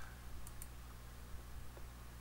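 Two faint computer mouse clicks in quick succession about half a second in, over a low steady hum.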